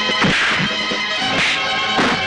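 Film fight-scene punch sound effects: a few sharp whacks of blows landing, over the movie's background music score.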